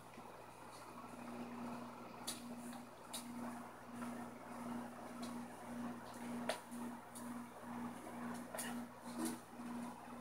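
Faint hum of aquarium equipment: a steady low hum under a higher hum that pulses about twice a second from a couple of seconds in, with a few light clicks over it.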